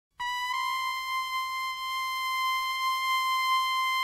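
One steady, high-pitched electronic tone, held without change at a single pitch.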